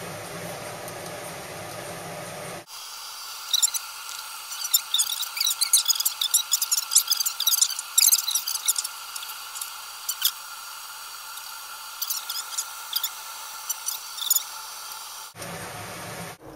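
Soy-polyol polyurethane foam fizzing and crackling with many tiny irregular pops as it rises in a beaker, densest about a third of the way in and thinning out near the end. It is preceded by a few seconds of steady hum.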